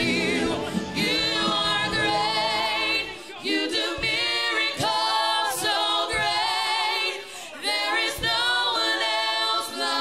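Worship singers singing a slow gospel song over keyboard accompaniment. The accompaniment drops out about three seconds in, leaving the voices singing alone.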